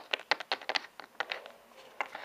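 Quick, irregular light clicks and taps of a small plastic toy figurine tapped against a plastic toy calendar, acting out writing on it; about a dozen in the first second and a half, then they stop.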